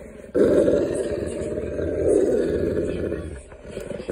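Dog growling in play: one long, rough growl that starts just after the beginning and fades out about three seconds in.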